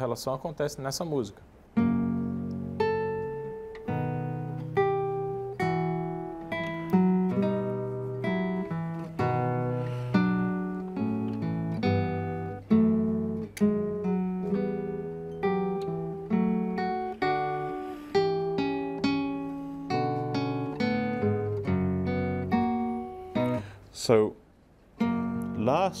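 Nylon-string classical guitar played solo: a slow contrapuntal passage of plucked notes and chords, demonstrating a false relation, an A-sharp in one voice against an A-natural in another. The playing begins about two seconds in after a few spoken words, and breaks off a couple of seconds before speech resumes.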